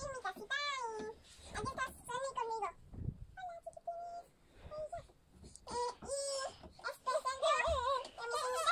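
A young girl's high-pitched voice in several drawn-out phrases without clear words, its pitch sliding up and down, with short pauses in between.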